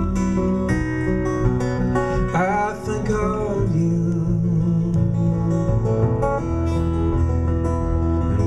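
A steel-string acoustic guitar played solo in a slow folk song, picking sustained chords and notes through an instrumental passage between sung lines.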